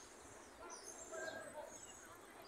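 Faint open-air ambience with small birds chirping in short, high, scattered calls.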